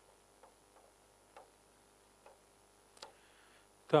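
A stylus writing on an interactive display, heard as a few faint, scattered clicks and a brief soft scratch near the end.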